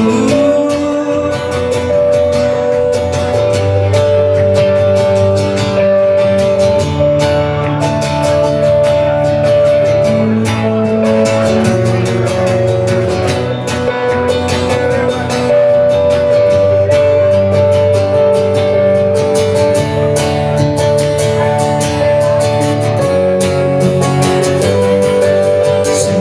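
Live acoustic band music in an instrumental passage: acoustic guitar chords under a melody of long, steady held notes that step from one pitch to the next.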